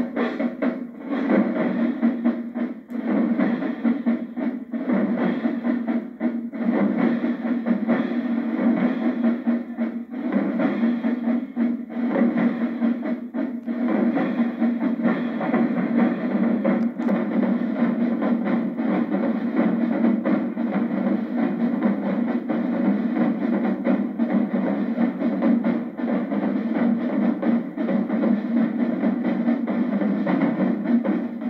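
Marching drumline playing without a break: snare drums, bass drums and handheld crash cymbals together in a dense, steady rhythm, with the cymbals washing over the drums.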